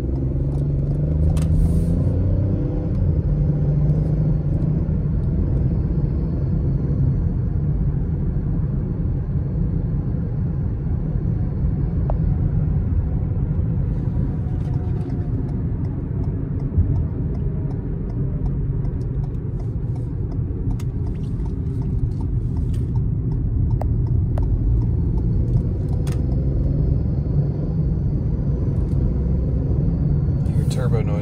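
In-cabin drive noise of a 2021 Ford Bronco Sport Big Bend: a steady low rumble of road and tyre noise mixed with the engine. The engine note rises in the first few seconds as the car speeds up.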